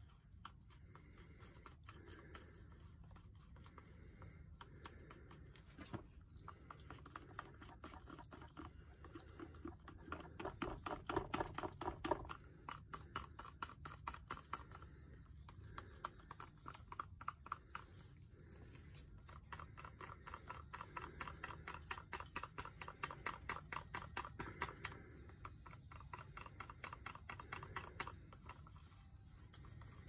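Paint being stirred in a cup, a fast run of small clicking, scraping strokes, loudest about ten to twelve seconds in. The paint is being mixed with Floetrol pouring medium to thin it for a pour.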